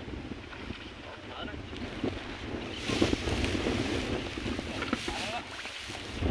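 Wind buffeting the microphone in a steady low rumble, with rice stalks rustling and swishing as someone wades through a flooded rice paddy, growing louder about halfway through.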